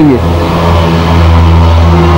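A steady low electrical hum with a stack of evenly spaced overtones. It is loud in the pause between words, as the hum on an old analogue video recording is.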